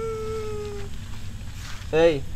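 A single long held note, steady in pitch, that fades out about a second in; a man starts speaking near the end.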